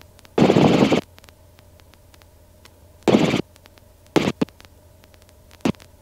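Short bursts of static hiss on the helicopter's radio and intercom audio: four of them, the longest about half a second near the start, the rest shorter. Between them the line is nearly quiet except for a faint steady hum.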